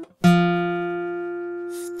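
A single note picked on an acoustic guitar, the E at the second fret of the fourth (D) string, ringing out and slowly fading. It is one step of a C major scale played note by note.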